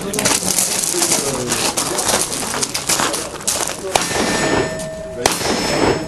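Two black-powder handgun shots, about four and five seconds in, each followed by a steel target ringing with a steady tone for about a second. Before them come a few seconds of clattering movement.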